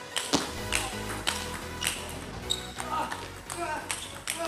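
Table tennis ball in a fast rally, sharp clicks of ball on bat and table about twice a second, over background music with a steady bass line.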